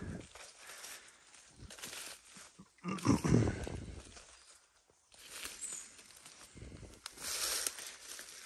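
Rustling of leaves and brambles and footsteps through undergrowth, in short bursts, with a louder low-pitched sound about three seconds in.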